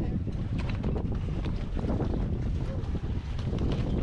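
Wind blowing on the microphone on a small boat at sea, a steady low rumbling noise with a few faint knocks.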